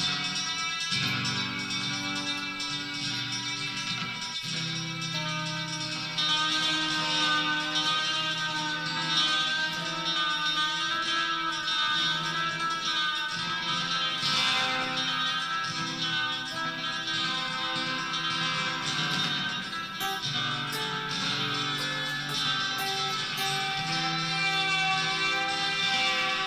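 Electric guitar played through a delay effect: slow notes and chords that ring on and overlap one another, with a slight warble in pitch.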